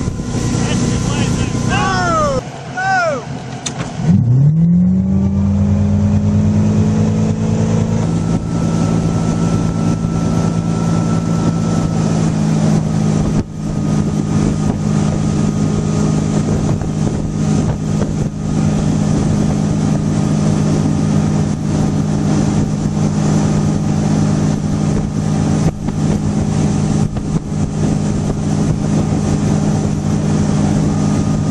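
Motorboat engine towing a water skier. Its pitch wavers and drops away, then about four seconds in it revs up sharply and settles into a steady drone at towing speed, over the constant rush of wake and wind.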